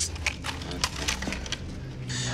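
A quick run of light, sharp clicks and rattles, about half a dozen in two seconds, over a steady low hum.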